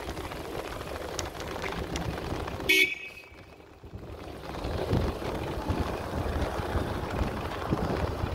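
Low wind and road rumble on a phone microphone during a bike ride, broken about three seconds in by one short, high-pitched horn toot, the loudest sound. The sound drops and goes muffled for about a second and a half after it, then the rumble returns.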